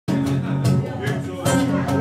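Acoustic guitar played live, strummed chords ringing on, with fresh strums about half a second in and again near the end.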